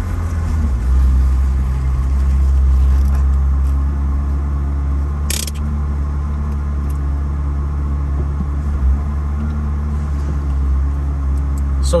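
Ferrari 360 Spider's 3.6-litre V8 running at a steady cruise through a tunnel, a low drone that swells about a second in. A brief hiss cuts in about five seconds in.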